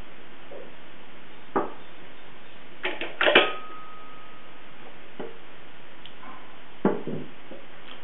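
Hinged wooden toolbox lid lowered shut with a knock, then a quick cluster of clicks and knocks as the brass lid latch is fastened, the loudest followed by a short metallic ring. A couple of lighter wooden knocks follow as the box is handled.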